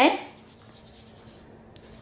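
Faint, steady scratching of a brown crayon rubbed back and forth on paper while colouring in.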